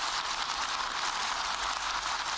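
Concert audience applauding, a steady, dense clatter of clapping.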